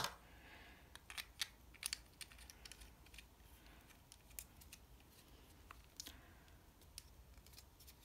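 Faint, scattered clicks and light knocks of hard plastic as a GoPro Hero Session's mounting frame and buckle are handled and taken apart.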